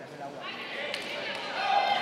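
Dull thuds of gloved punches landing during an exchange in a boxing ring, under shouting voices from around the ring, with a louder shout near the end.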